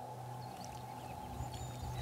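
A steady, music-like drone: a low held tone with a higher held tone above it, unchanging in pitch.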